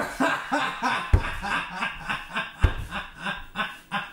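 Laughter in quick, short repeated bursts, with two low thumps about a second and two and a half seconds in.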